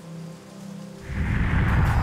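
Soft background music, then about a second in a loud rising whoosh sound effect, a transition swoosh with a low rumble.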